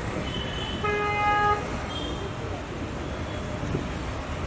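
A vehicle horn honks about a second in, one steady pitch held for under a second, over the steady noise of street traffic.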